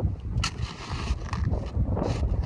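Crusted snow being dug and broken up by hand, with sharp crunches about half a second and a second and a half in, over a steady low rumble.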